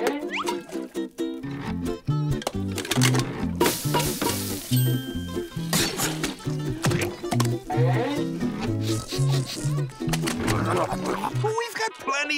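Cartoon background music with a bouncy, stepping bass line, overlaid with short clattering and noisy sound effects and a brief high whistle-like tone about five seconds in.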